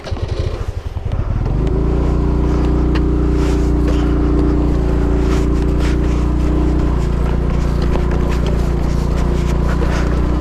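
TVS Jupiter scooter's single-cylinder engine running at steady revs. After an uneven first second and a half it settles into an even hum.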